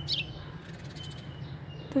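A bird's brief high chirp just after the start, with faint thin high calls later, over a steady low background hum.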